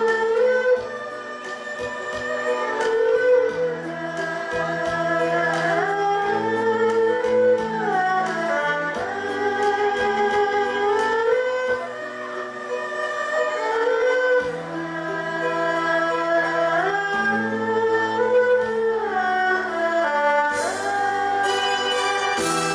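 An erhu ensemble of bowed two-string Chinese fiddles playing a slow melody in unison, full of sliding notes between pitches, over steady low sustained bass notes.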